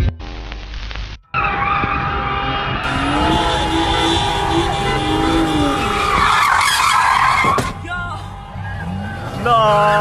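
Car sliding and spinning on pavement, tyres squealing and skidding with the engine revving up and down, loudest a little past the middle.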